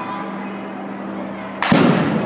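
A softball bat hitting a softball off a batting tee: one sharp crack about a second and a half in, with a short ring-out after it.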